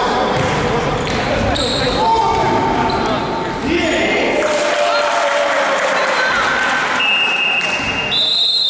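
Basketball being played in an echoing sports hall: sneakers squeak on the court floor, the ball bounces, and players and spectators call out. A referee's whistle sounds near the end, stopping play.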